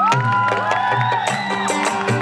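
Live Sufi qawwali music: a melody gliding up and down over a steady drone, with tabla strokes underneath. From about a second in, regular sharp strikes join the beat.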